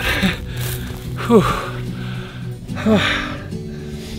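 Out-of-breath man laughing and blowing out a 'whew' after a hard uphill climb, over steady background music.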